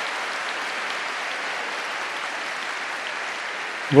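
Large audience applauding steadily, an even wash of many hands clapping.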